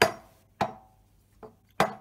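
A copper-hide mallet tapping a steel machine vice about four times, sharp knocks with a brief metallic ring, one of them faint. The taps nudge the vice round on its pivot to bring a dial test indicator back to zero while squaring it on the milling table.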